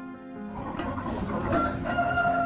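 Outdoor farmyard sound fading in, then a rooster crowing: one long call starting about one and a half seconds in.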